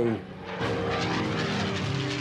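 Propeller fighter plane's piston engine droning in flight, swelling about half a second in and then holding steady.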